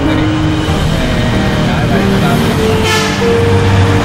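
Background music with long held notes, over a man's voice and the rumble of road traffic, with a vehicle whooshing past about three seconds in.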